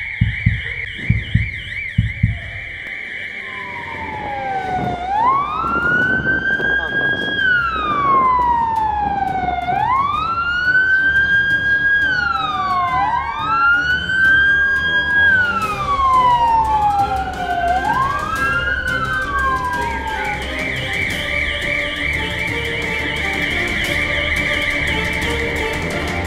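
Fire engine siren. It starts as a fast warbling tone, switches about four seconds in to a slow wail, and returns to the fast warble near the end. The wail rises, holds and falls roughly every four to five seconds, with a second wail overlapping it out of step. Quick footfalls sound over the first two seconds.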